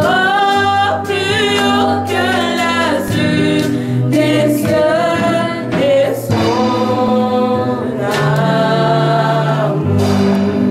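Women's voices singing a slow French hymn, held notes with vibrato, over steady low accompanying notes that change in steps.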